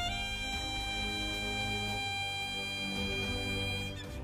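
Saxophone holding one long note over a live band's accompaniment, the note ending near the close.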